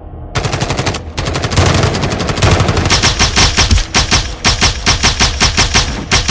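Automatic rifle fire, a rapid run of shots. It starts just after the opening, breaks off briefly about a second in, then keeps going steadily.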